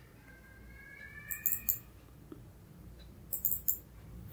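Computer mouse clicks, in two short runs of about three quick clicks each, roughly two seconds apart, while the code editor view is changed and scrolled. A faint rising tone sounds in the background through the first second and a half.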